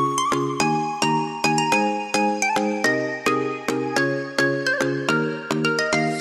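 Background music: a light instrumental tune of short, evenly spaced notes, about two or three a second.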